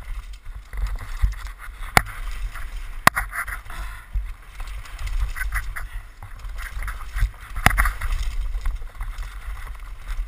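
Downhill mountain bike rattling over a rough dirt and rock trail, heard from a helmet camera: a low rumble of wind and tyre noise, with sharp clacks from the bike as it hits bumps at about two, three and eight seconds in.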